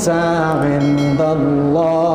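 A man chanting an Arabic Quranic verse in the melodic recitation style, with long held notes that step between a few pitches.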